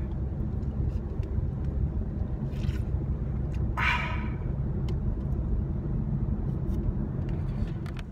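Steady low road rumble inside a moving car's cabin. About four seconds in, a man gives a short loud shout.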